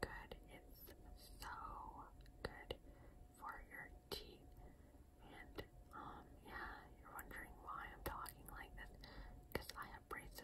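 A woman whispering in soft, breathy phrases, with a few sharp clicks between them.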